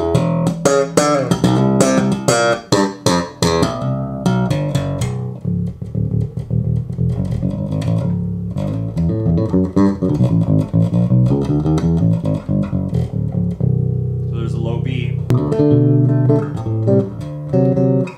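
Electric bass played through an ISI Bass-O-Matic three-way cabinet (10-inch woofer with an 8-inch coaxial mid-woofer and compression driver), giving a full sound. It opens with a fast run of sharp, percussive plucked notes, settles into smoother held notes in the middle, and turns crisp and percussive again near the end.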